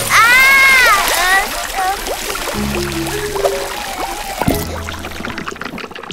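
Cartoon sound effect of water spurting up through a leak in a wooden rowboat's floor, a steady splashing spray that cuts off about four and a half seconds in. It plays over background music and opens with a child character's short startled cry.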